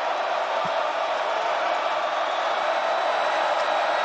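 A large stadium crowd making a steady, loud noise, a continuous din of many voices with no single call standing out.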